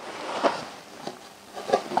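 Soft rustling and rubbing as rubber sealing washers and the plastic parts of a shower waste trap are handled, swelling briefly about half a second in, with a few faint ticks near the end.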